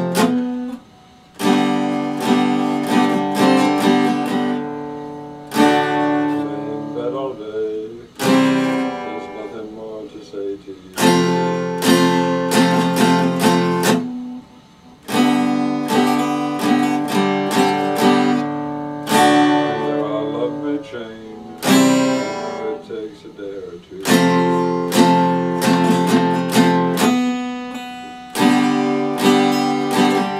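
Epiphone acoustic-electric guitar strummed in chords, an instrumental passage with no singing. The playing comes in phrases of a few seconds each, with a brief break about a second in and another around fourteen seconds.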